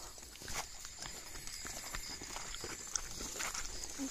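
Footsteps through grass and dry leaf litter, with small crackles and rustles of brushed vegetation, over a thin steady high-pitched tone.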